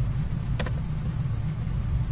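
Steady low background hum with a single sharp click about half a second in.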